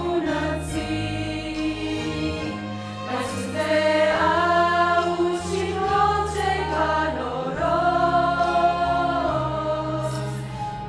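Mixed church choir of women's and men's voices singing a Romanian hymn in sustained, held chords, swelling louder about a third of the way in.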